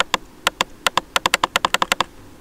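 Computer mouse button clicked over and over, about fifteen sharp clicks, coming faster in the second half.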